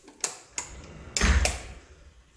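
A few sharp clicks, then a louder knock with a dull thud a little over a second in.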